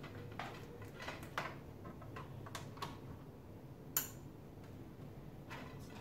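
Light clicks and rattles of an Ethernet cable being handled and plugged into the back of a mini desktop computer, with one sharper click about four seconds in.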